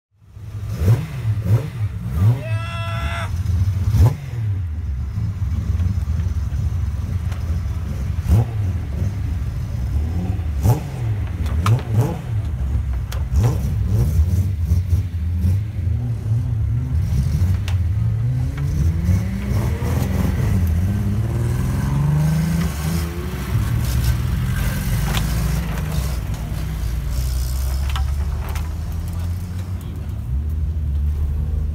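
Modified cars' exhausts rumbling as they pull out at low speed, with several quick rev blips in the first twelve seconds and a long rising rev about 18 to 23 seconds in as a car accelerates away. Crowd chatter underneath.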